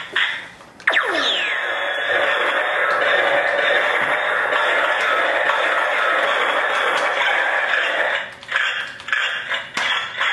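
Toy laser tag rifle's small built-in speaker playing an electronic sound effect: a quick falling sweep about a second in, then a steady electronic drone that drops away after about seven seconds.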